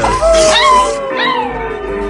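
Small white dog howling: one long howl that slowly falls in pitch, with shorter rising-and-falling calls over it, against background music.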